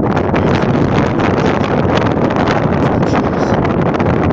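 Strong wind buffeting the microphone: a loud, steady low rumble with no letup.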